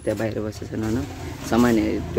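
People talking close to the phone.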